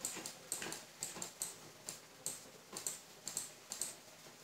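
Faint, light computer clicks from a mouse and keyboard, about four a second, irregular and often in quick pairs.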